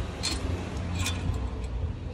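Two light metallic clicks about a second apart as a stainless motorcycle exhaust header and its clamp are handled, over a steady low background hum.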